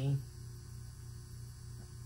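Steady low electrical hum in the recording, with the tail of a woman's spoken word cutting off right at the start.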